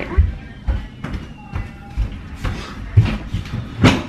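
A short stretch of music over dull thumps and knocks, with a sharp knock just before the end, as the camera is handled and set in place.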